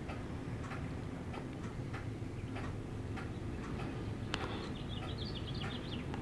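Quiet room tone with scattered faint light clicks. There is one sharper click about four seconds in, followed by a quick run of faint high ticks.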